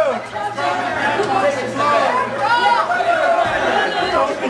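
Overlapping voices of spectators in a hall, talking and calling out over one another with no single clear speaker.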